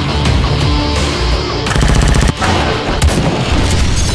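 Dramatic trailer music layered with automatic gunfire: a rapid burst of shots about two seconds in, and one loud bang about three seconds in.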